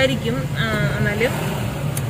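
Talking over the steady low hum of a car's engine and tyres, heard from inside the cabin as the car moves slowly.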